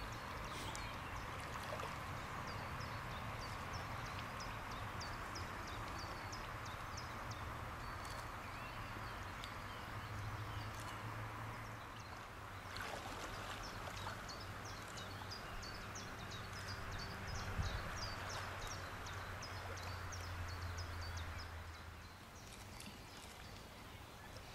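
Outdoor waterside ambience: a steady hiss of moving water with a low rumble underneath, and short high chirps repeating about twice a second through most of it.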